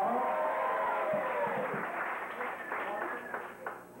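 Applause from a small audience and band for an introduced guitarist, dying away near the end, with a man's drawn-out word trailing off in the first second or so.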